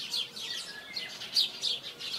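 Bird-chirping sound effect: small birds twittering in a quick, continuous run of short, high, falling chirps.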